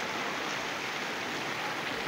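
Steady rushing of a shallow rocky stream flowing over and around boulders.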